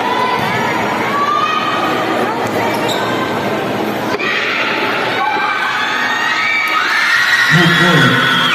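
Crowd chatter and shouts filling a gymnasium during a basketball game, with a basketball bouncing on the court.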